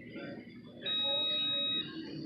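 A single electronic beep: one steady high tone, starting about a second in and cutting off sharply after about a second, over a faint low murmur.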